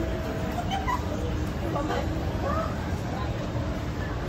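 Shopping mall ambience: a steady low rumble of a busy public space with distant, indistinct voices, mostly in the first three seconds, and a faint steady hum.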